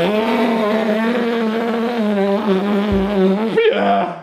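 A door latch clicks as the door opens, then a voice holds one long sung note for about three and a half seconds, wavering slightly and breaking off just before the end.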